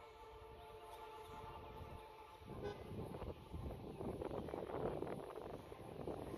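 A faint, steady horn tone sounds for about the first two seconds. Then louder street noise of passing vehicles comes up.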